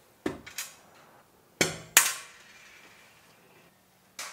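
Several sharp knocks and clicks of hard objects handled on the aluminum bed plate: three light ones, then two louder ones close together near the middle, the second trailing off in a short ring.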